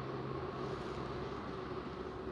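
Steady background hum and hiss of room tone, with no distinct event.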